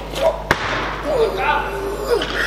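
A 112 kg barbell being cleaned, with one sharp impact about half a second in as the bar and the lifter's feet meet the lift, followed by voices shouting in the hall.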